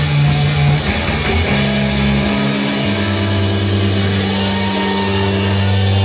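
Live punk band's distorted electric guitars and bass holding long low notes without drums, the chords ringing out at the end of the song. The held pitch changes twice, dropping to a lower drone for the second half.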